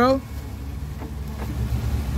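Car engine idling, a steady low hum.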